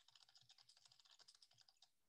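Faint computer-keyboard typing sound effect: a quick run of light key clicks, about seven a second, that stops near the end.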